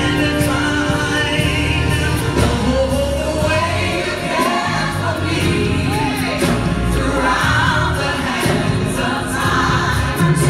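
A woman singing live into a microphone over band accompaniment in a gospel style, her voice gliding through long held notes, with a steady cymbal beat underneath.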